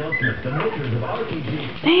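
Mi-Ki puppies whimpering with short, high whines while playing over a plush toy. A woman's voice cuts in near the end.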